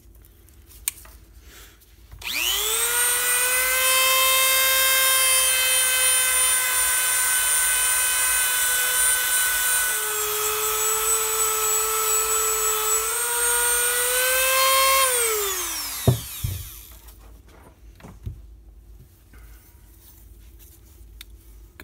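Dremel rotary tool with a black abrasive buffing wheel spinning up about two seconds in and running with a steady high whine as it smooths the rough cast aluminum of a Harley shovelhead rocker box. The pitch dips for a few seconds partway through, and the tool winds down about fifteen seconds in, followed by a single knock.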